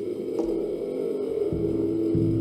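Improvised ambient music: a sustained drone of held tones swelling in and growing louder, with a couple of soft percussion taps underneath.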